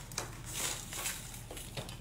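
Rustling and scraping handling noise as the camera setup is picked up and moved, in several short bursts, over a steady low electrical hum.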